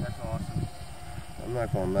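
Soft speech in short bits, about a second apart, over an uneven low rumble of wind on the microphone.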